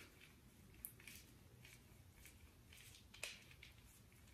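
Near silence, broken only by faint soft rustles and a few light clicks as a handheld dermaroller is rolled over the skin of the arm; the two clearest clicks come about a second in and just after three seconds.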